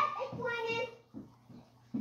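A young child's voice making one drawn-out, high-pitched wordless call lasting about a second, followed by a few faint taps.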